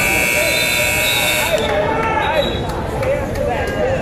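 Gym scoreboard buzzer sounding once for about a second and a half over shouting from coaches and crowd, typical of the signal ending a wrestling period.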